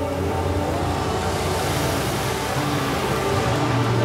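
Soundtrack music: sustained chords held over a steady low bass drone, with a wash of noise beneath them.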